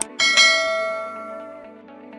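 A mouse-click sound effect, then a bright notification-bell chime that rings and fades over about a second and a half: the click-and-ding of a subscribe-button animation.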